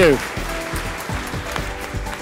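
Audience applauding, with background music underneath.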